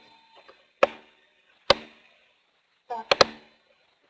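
Computer mouse clicking: a few sharp, separate clicks, with a quick double click about three seconds in, as an annotation is drawn on a presentation slide.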